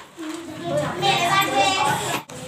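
Children's voices talking, with a high child's voice loudest in the second half.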